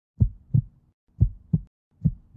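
Heartbeat sound effect: two double thumps, low and dull, about a second apart.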